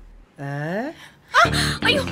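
A woman's short exclamation rising in pitch, then louder, breathy vocal sounds near the end, like gasps.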